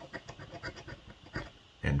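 A coin scraping the latex coating off a scratch-off lottery ticket in quick, irregular strokes.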